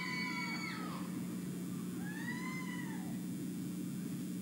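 Two shrill, high-pitched whoops from an audience member cheering a graduate: a long held one that trails off about a second in, then a shorter one that rises and falls about two seconds in.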